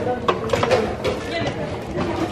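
Indistinct voices talking in a busy indoor hall, with a couple of sharp clicks early on.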